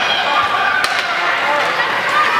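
Ice hockey play in an echoing indoor rink: shouted calls over the scrape of skates on ice, with one sharp clack just under a second in.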